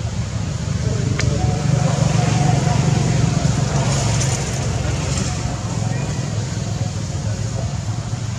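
Steady low rumble of outdoor background noise, with faint indistinct voices and a single click about a second in.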